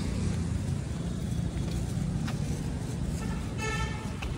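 Street traffic noise: a steady low rumble of road vehicles, with a short high-pitched tone near the end.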